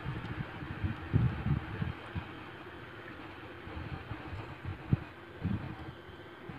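Steady background hiss of the recording room and microphone, with a few soft low thumps about a second in and near the end.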